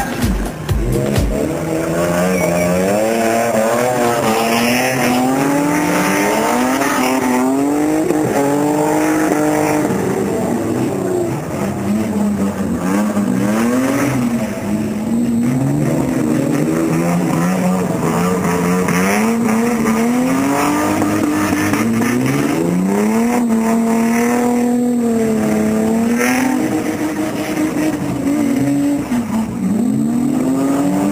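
Drift car's engine revving hard, its pitch sweeping up and down again and again as the throttle is worked while the car slides around the wet tarmac.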